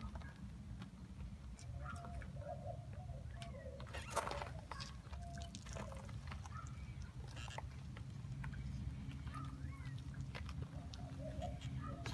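An 18-inch Sorbo squeegee's rubber blade drawn across wet, soapy window glass, giving short intermittent squeaks over a steady low hum.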